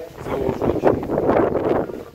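Wind buffeting the camera's microphone: a rough, gusty rumble that swells after the start and eases off near the end.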